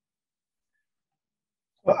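Dead silence for nearly two seconds, then a man starts speaking near the end.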